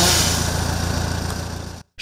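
Petrol chainsaw engine running at a steady pitch during tree pruning, cutting off abruptly near the end.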